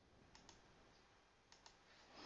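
Near silence: faint room tone with two faint double clicks, one about half a second in and another about a second and a half in.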